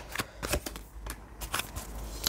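A deck of oracle cards being shuffled and drawn by hand: a few soft, irregular flicks and taps of card on card.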